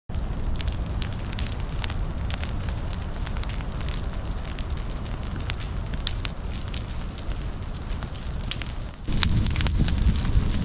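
A low prescribed ground fire burning through pine straw and litter, crackling with many scattered sharp pops over a steady low rumble. About a second before the end the sound jumps louder.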